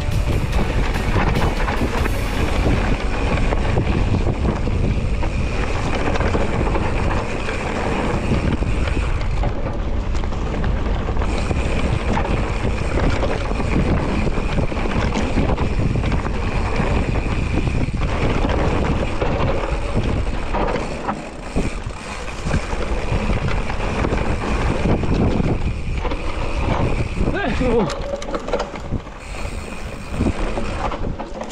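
Mountain bike ridden along a rough dirt and grass track. Wind rumbles on the rider's camera microphone over the tyre noise. The rumble eases briefly about twenty seconds in.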